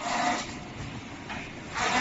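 Thin clear vacuum-formed plastic parts rubbing and scraping as they are handled and stacked on the trimming machine's output conveyor, in about three short bursts.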